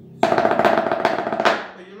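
Wooden drumsticks playing a fast roll of strokes on a towel-covered drum surface, starting just after the start and dying away after about a second and a half.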